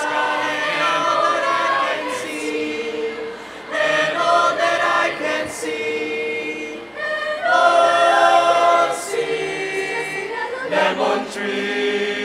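Mixed choir singing a cappella in several parts: held chords in phrases of about three seconds, with brief breaks between, swelling to its loudest about eight seconds in.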